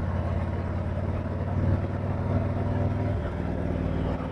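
Harley-Davidson Street Glide's V-twin engine running steadily at cruising speed, with wind rush over the bike. The engine note changes slightly about three seconds in.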